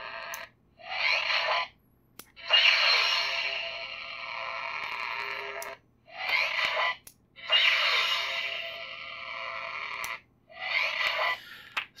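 Savi's Workshop lightsaber's sound effects from its small built-in speaker as it is switched on and off about three times with a mechanical switch wired in place of its usual sensor: a sharp click, then the saber's ignition sound and fading hum, then another click and the shorter power-down sound.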